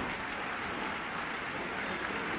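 Arena crowd applauding and cheering in a steady wash of noise, reacting to a wrestling pinfall just counted to three.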